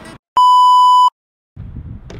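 A single loud, steady electronic beep, one pure tone lasting about three quarters of a second, cut in cleanly with dead silence before and after it, as in a censor bleep sound effect. Faint outdoor background noise comes back near the end.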